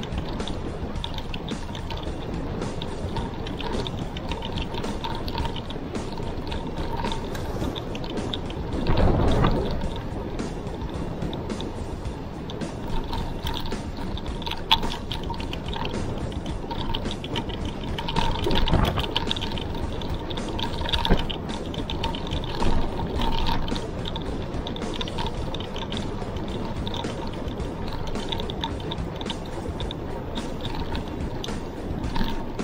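Wind and road noise on a handlebar-mounted camera while a mountain bike rolls along a concrete road, with steady clicking and rattling from the bike and two louder gusts of wind about nine and nineteen seconds in.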